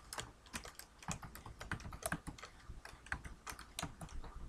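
Computer keyboard typing: short, irregular runs of quiet keystrokes.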